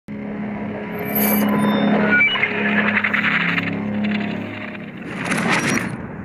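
Intro of a rap track before the beat drops: a steady low drone with a few short high blips early on, swelling into a rising noisy whoosh near the end.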